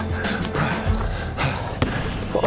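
Music with a steady beat over a basketball bouncing on a hardwood gym floor, with one sharp bounce near the end.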